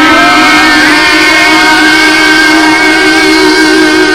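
Loud live rock music: a distorted electric guitar holds long, layered sustained notes, with one note sliding up near the start.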